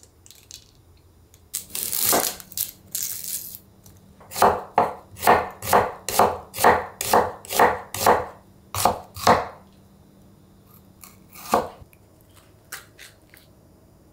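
Kitchen knife slicing through an onion onto a wooden cutting board: about a dozen even cuts at roughly two a second, with one more cut a couple of seconds later. A short rustle comes before the cuts.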